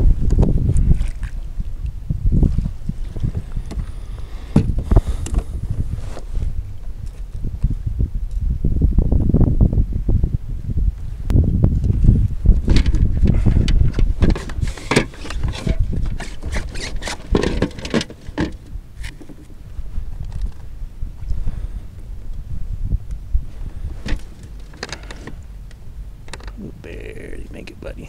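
Rumbling wind on the microphone, with scattered knocks and rattles of gear handled on a fishing kayak.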